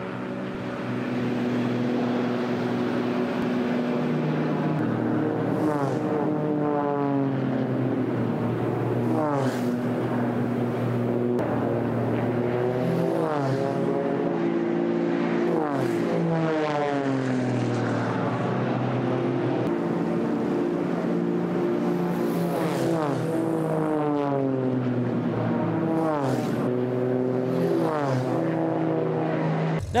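Aerobatic race plane's propeller engine (Extra 330LX) running hard. Its pitch sweeps up and falls away again and again as the plane flies past and turns.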